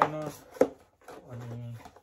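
A single sharp tap about half a second in as the cardboard packaging of a camera box is handled, with two short hummed vocal sounds around it.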